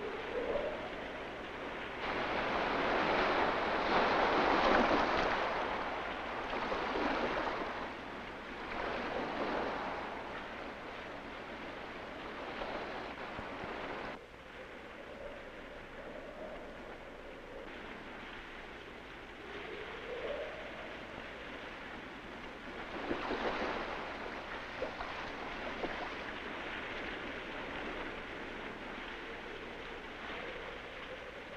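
Surf washing ashore in swells that rise and fade every few seconds, the biggest early on, heard on an old film soundtrack.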